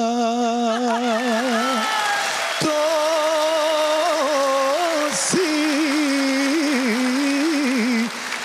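A man singing unaccompanied in the ornamented Serbian folk style, holding long notes with a wavering vibrato and small trills. The phrases break briefly about two, two and a half, and five seconds in.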